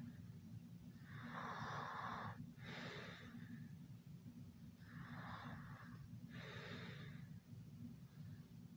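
Heavy, noisy breathing: two slow breaths, each a longer rasp followed by a shorter one, a few seconds apart.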